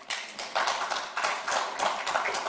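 Applause in a large hall: many people clapping, the claps overlapping irregularly.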